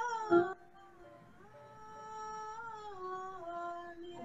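A woman's voice holding a long sung 'oh' that breaks off about half a second in, then a second, softer held 'oh' that begins after a short breath and steps down a little in pitch near the end. It is vocal toning on the exhale, done as a breathing exercise for lung health.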